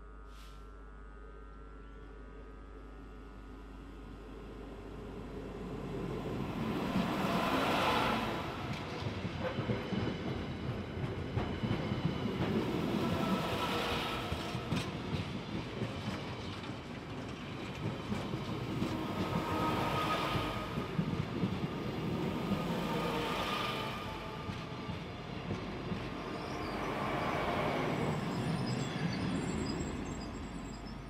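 A long yellow engineering train approaching and then running close past on the main line. A rumble builds over the first few seconds, then the wheel-and-rail noise swells and eases several times as the vehicles go by.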